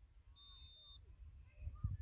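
A referee's whistle: one short, steady, high blast about half a second in, signalling the penalty kick to be taken. Faint distant voices and wind rumble on the microphone lie underneath.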